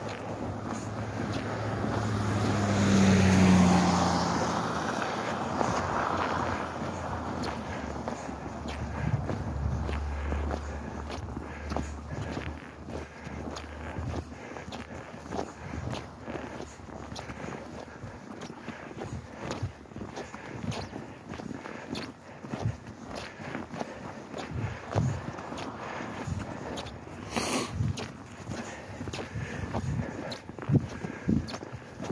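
A car drives past, swelling to a peak a few seconds in and fading away, followed by steady footsteps crunching through snow on a sidewalk.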